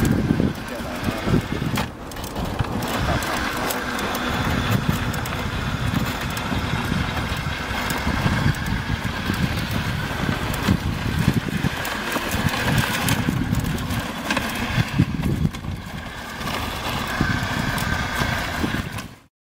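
The 60 W electric drive motors of the TITAN Fire Fighter robot prototype whine as the six-wheeled chassis climbs over rough dirt and rock, with stones crunching under the tyres. The builder judges these motors too weak for the robot's weight.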